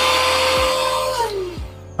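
Cordless handheld vacuum running with a steady whine and rush of air, then switched off a little past halfway, its whine dropping as the motor spins down.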